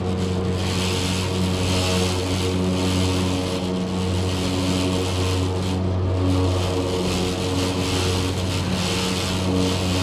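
Gondola terminal bullwheel and drive machinery running, giving a steady low mechanical hum with several steady overtones. A higher hiss or whir swells and fades about once a second.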